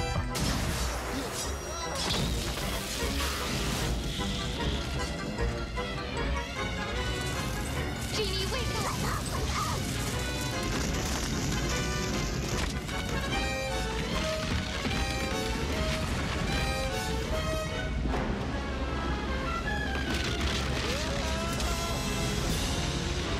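Dramatic orchestral film score with cartoon action sound effects, including crashes.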